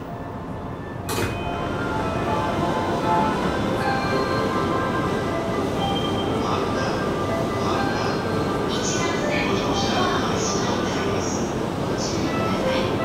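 Inside an E235 series Yamanote Line train car: a sudden sharp sound about a second in, then louder, busier running noise with many short scattered tones.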